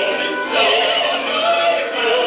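Sung stage-musical number in operatic style: voices singing over orchestral accompaniment.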